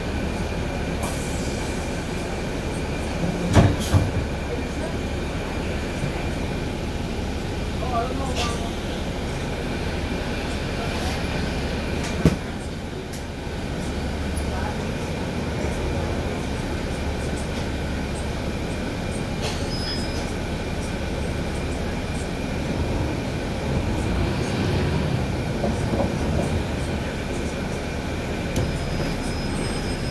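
Inside a NABI 416.15 transit bus under way: a steady engine and drivetrain drone with a constant high whine and body rattles. Two loud knocks come about 4 seconds in and about 12 seconds in.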